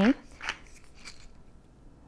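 Stainless steel pepper mill being twisted by hand, grinding black peppercorns in a few short scratchy rasps during the first second or so, then fading to faint.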